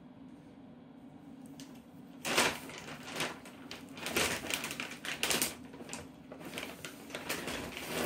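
A kitten scratching and rustling about in a fleece pet bed set on a plastic carrier, in irregular clicky bursts starting about two seconds in. It is hunting in the bed for a piece of dry food it thinks has dropped there.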